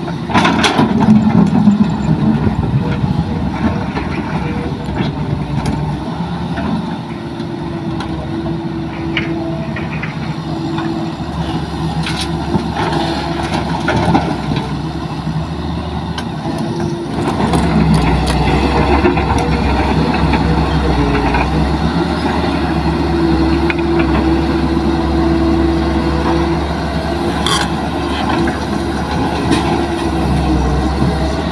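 Diesel engine and hydraulics of a Hitachi crawler excavator working under load as it digs and swings. The engine note grows heavier about halfway through, and a few short knocks sound as the bucket works.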